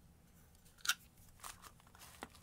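A sharp click about a second in, followed by a few lighter ticks: small metal and plastic parts being handled and set down on a workbench.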